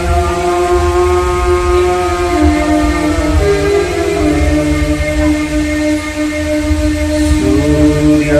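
Devotional music heard over a loudspeaker system: long, steady held notes that change pitch in slow steps, a second note sounding below them, over a constant low hum.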